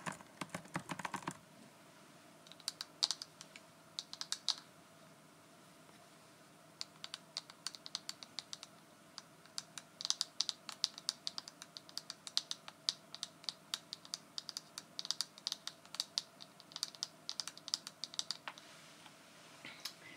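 A plastic paddle hairbrush with pink bristles handled right at the microphone, making runs of quick, light plastic clicks and ticks. There is a short clatter at the start, a few sparse clusters, then dense runs through most of the second half.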